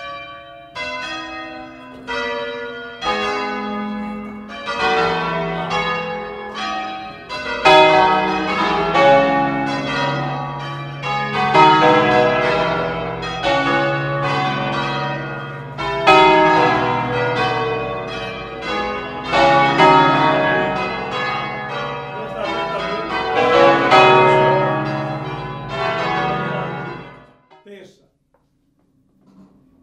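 Large ring of church bells, at least ten, swung full by rope in the tower ('a distesa'): loud pitched strikes that start fairly sparse and build into a dense, overlapping peal, then die away quickly about a second before the end.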